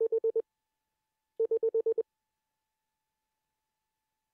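Morse sidetone keyed by a Begali Intrepid semi-automatic bug's dot pendulum: two quick runs of dots in a steady mid-pitched beep, about five and then about seven at some ten dots a second. Each run stops cleanly, the dot damper absorbing the pendulum's leftover swing.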